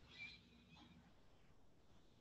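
Near silence: room tone, with a faint brief high-pitched sound about a quarter second in.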